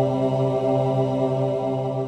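Intro music: one held chord, a steady drone of many even tones with no beat or melody.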